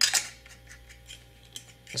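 Urushi-lacquered ebonite fountain pen cap being turned on the barrel's lacquered threads: one sharp click at the start, then a run of faint small ticks. The threads turn without catching.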